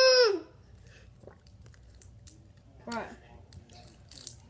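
A child's loud, steady, closed-mouth "mmm" hum, a reaction to a sour candy in his mouth, ending about half a second in. Then it is quiet apart from a few faint clicks, until a child says "What?" near the end.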